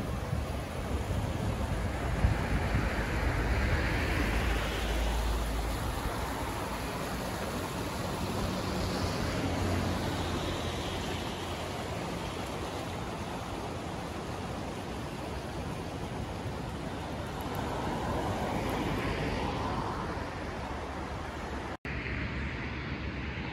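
Sea surf washing onto a beach, a steady noise with slow swells, with wind buffeting the microphone, heaviest in the first few seconds.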